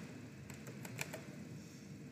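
Several light clicks of a computer keyboard and mouse, close together, as keyboard shortcuts for copy and paste are pressed.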